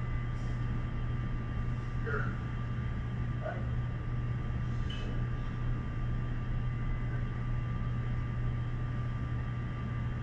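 Steady hum and hiss with a thin steady tone, and a few brief faint voice sounds about two, three and a half, and five seconds in: background of the Apollo 8 onboard tape recording playing over the room's speakers.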